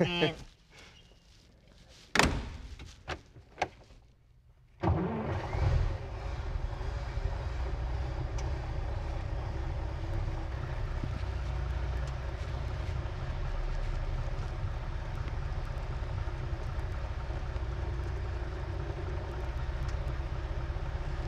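A sharp thunk and a few smaller clicks, then, about five seconds in, the 1928 Isotta Fraschini Type 8A's straight-eight engine starts and runs on steadily with a low, even sound.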